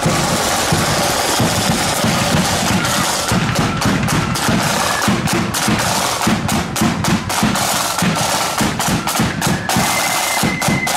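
A marching flute band's drum corps playing snare drums and a bass drum in a steady march beat, with the flute melody faint behind the drums.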